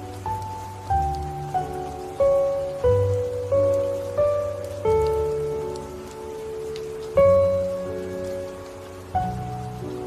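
Slow instrumental piano music, single notes and chords struck every half second to a second and left to fade, with low bass notes underneath, mixed over a steady bed of falling rain.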